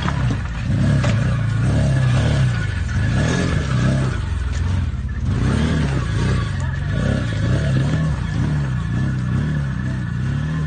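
Side-by-side UTV engine revving up and down under load as it crawls over rocks, its pitch rising and falling about once a second.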